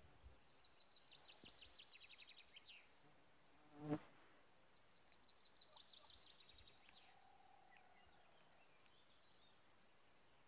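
A fly buzzes close past the microphone about four seconds in, brief and the loudest sound. Before and after it come two faint trilled songbird phrases, each a quick run of high notes ending in a down-slur.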